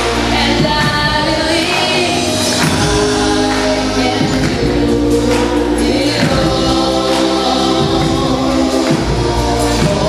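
A girl singing a pop song into a microphone over a backing track.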